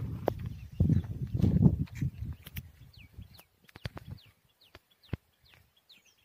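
Birds calling in short, high, falling chirps, repeated many times from about halfway in. Before them, for the first two seconds or so, a loud low rumbling noise on the microphone, with sharp clicks scattered throughout.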